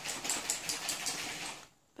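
Sequins and Halloween confetti rattling and sliding inside a clear plastic shaker pocket as it is shaken, a rapid run of tiny clicks that stops near the end.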